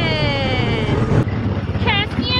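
Small gasoline engine of a Tomorrowland Speedway ride car running steadily under way, a low pulsing rumble. Over it, during the first second, a voice drawn out in one long falling tone.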